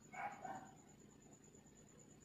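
A short, faint animal call: two quick pitched yelps just after the start, then near silence.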